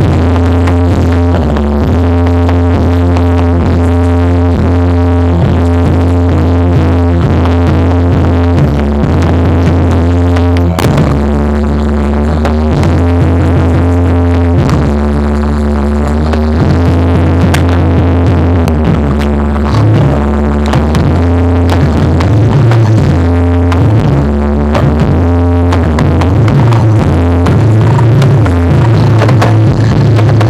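Loud dance accompaniment music with a heavy, sustained electronic bass and a steady, repeating beat.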